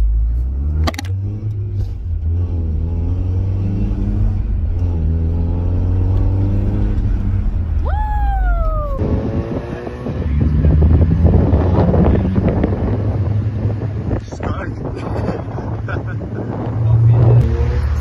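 Mazda MX-5 Miata (NA) four-cylinder engine accelerating, heard from inside the car, its pitch climbing several times in turn as it pulls through the gears. Over the later half it gives way to rougher road and wind noise with a low engine rumble.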